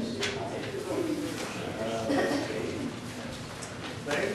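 Soft, wavering voice sounds with no clear words, quieter than the talk around them.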